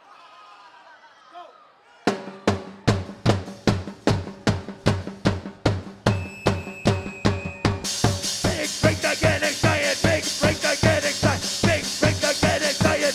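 After a brief lull with faint crowd murmur, a live band comes in about two seconds in with a fast, even drum-kit beat and bass. High held tones join in the middle, and at about eight seconds cymbals and the full band come in.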